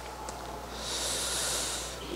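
A breath drawn in close to a handheld microphone, a soft hiss lasting about a second, starting just under a second in.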